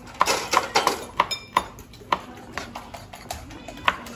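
Knife chopping shallots and chillies on a wooden cutting board: sharp, uneven knocks a few times a second, with a short ringing ping about a second in.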